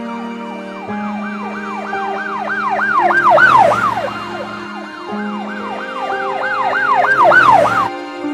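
Ambulance siren sound effect in a fast yelp, each sweep rising and falling about four times a second, swelling louder twice, over sustained music chords. It cuts off suddenly near the end.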